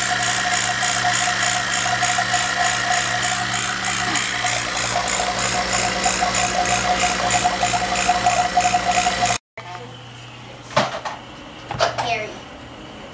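Electric refrigeration vacuum pump running steadily with a hum and a fast, even pulsing, pulling a vacuum on a Carrier air-conditioning system after a king-valve leak. It stops abruptly about nine seconds in, and then two sharp clicks follow against a much quieter background.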